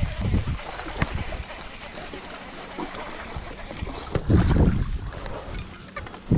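Wind buffeting the microphone over open water, in uneven gusts, with a loud surge about four seconds in and a few sharp handling knocks.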